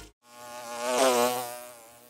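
A buzzing, insect-like sound effect: a wavering hum that swells to its loudest about a second in and then fades away, used as an audio logo sting.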